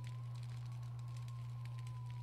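A steady low hum with a faint, thin high tone above it and a few faint ticks.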